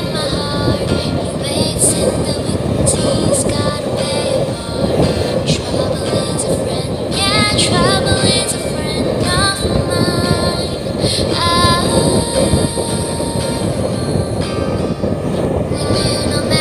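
A motorboat's engine running steadily at cruising speed, with rushing water and wind, and music with singing heard over it.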